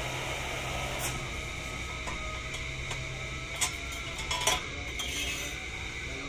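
A few light clicks and taps as a plastic car bumper is handled, over a steady background hum.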